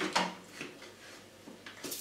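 Handling noise from a Moulinex Clickchef food processor being tilted and lifted off a tiled floor, its feet sticking to the tiles: a brief rub and knock at first, then a quiet stretch with a couple of light knocks near the end.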